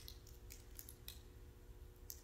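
Faint, irregular crackling clicks as a small piece of communion bread is broken and handled in the fingers, over a low steady room hum.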